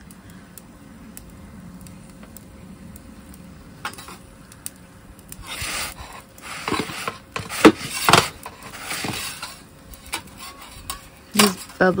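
Perforated metal pizza turning peel scraping over the oven's stone floor and clanking against the metal oven mouth as the pizza is turned: a run of scrapes about halfway through with one sharp knock among them. Under it, a low steady hiss from the gas burner.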